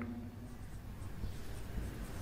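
Marker pen writing on a whiteboard, faintly.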